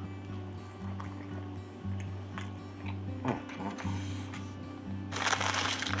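Background music with a low tone that repeats on and off. About five seconds in, a loud crinkling starts as a bag of chips is grabbed.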